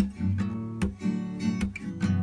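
Acoustic guitar strummed in a steady rhythm, accompanying a song between sung lines.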